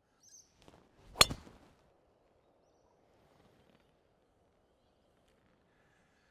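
Golf driver striking a teed ball: a single sharp crack about a second in, with a short ringing tail after it.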